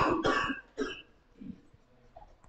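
A person coughing: three quick coughs in the first second.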